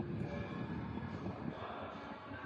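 Low, rough rumble of wheelchair wheels rolling over a hard indoor floor.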